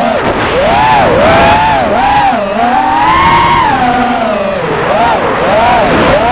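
Electric motor and propeller whine of an FPV aircraft, picked up by its onboard camera's microphone, the pitch rising and falling smoothly and continuously as the throttle changes, over a low rush of wind.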